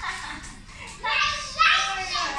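A young child's voice calling out loudly about a second in, over background music.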